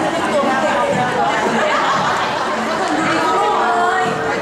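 Chatter: people talking, voices overlapping.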